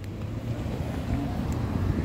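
Steady low rumble of city street noise, growing louder over the first half second and then holding level.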